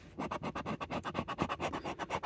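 A coin scratching the latex coating off a paper scratch-off lottery ticket in rapid, even back-and-forth strokes. The strokes start a moment in.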